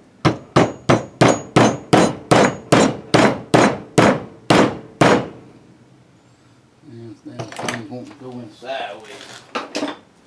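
A mallet tapping a grease seal into a 1985 Chevy K10 front wheel hub: a quick, even run of sharp taps, about three a second, stopping about five seconds in as the seal seats.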